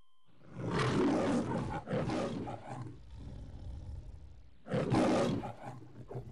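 The MGM logo lion roaring: a series of roars, loud at about a second in and again near the end, with quieter growling between.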